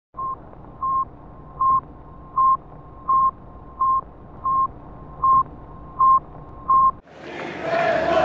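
Electronic intro beeps: ten short beeps of one high pitch, about three every two seconds, over a fainter steady tone of the same pitch and a low hum. They cut off suddenly about seven seconds in, and the noise of the live event fades in.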